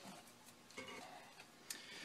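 Near silence: room tone with a couple of faint clicks, one near the end.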